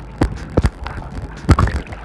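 Seawater gurgling and sloshing around an action camera held at the surface, as the camera goes under and comes back up. Several sudden knocks, the loudest about a second and a half in, come from waves hitting the camera.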